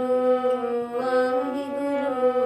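A woman chanting a Sikh devotional verse in slow, long-held notes, her voice stepping from one sustained pitch to the next.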